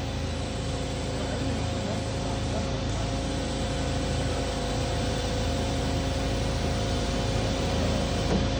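Steady mechanical hum with a few held tones as the Lockheed F-104S's electric stabilizer trim motor drives the whole horizontal stabilizer, with the aircraft on hydraulic and electric ground power. The hum grows slightly louder over the stretch.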